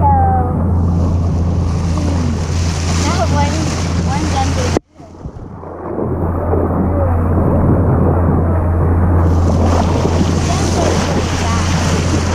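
Boat under way with its outboard running steadily, water rushing and splashing along the bow, and wind buffeting the microphone. About five seconds in the sound cuts out abruptly and comes back duller for a few seconds.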